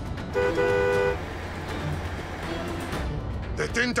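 Car horn sounding one blast of under a second, about half a second in, to make the vehicle ahead pull over, over background music and the low rumble of the moving car.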